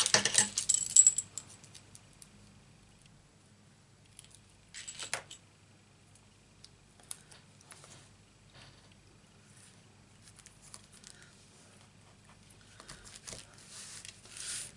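Small pieces of card and paper handled at close range on a craft mat. There is crisp crackling and clicking in the first second or so, a short rustle about five seconds in, then faint scattered taps as a metallic die-cut number is pressed onto the card.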